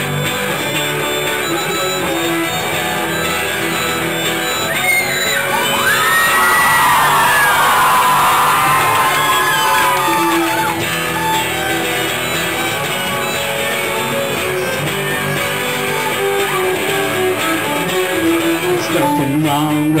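Live band playing an instrumental passage: strummed electric and acoustic guitars with a bowed violin and drums. A louder stretch of gliding high notes comes from about five to ten seconds in.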